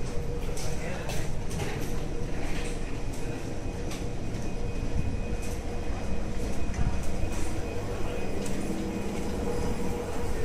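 Steady hum of a stopped metro train at the platform, with passengers' background chatter and footsteps as they get off the car.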